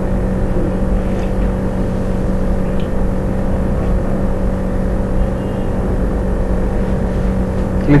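Steady background hum with a low rumble underneath, unchanging throughout.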